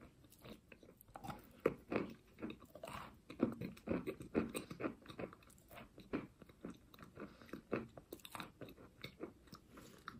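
Chalk coated in clay paste being bitten and chewed close to the microphone: irregular crisp crunches, several a second.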